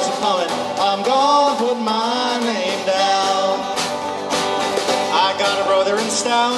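Live acoustic band playing a 1940s war-bond song: strummed acoustic guitar and snare drum, with voices singing in the first part.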